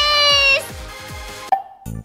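A high-pitched, drawn-out woman's voice, held for about half a second, over upbeat background music with a regular beat. The sound cuts out abruptly about a second and a half in, and the music starts up again just before the end.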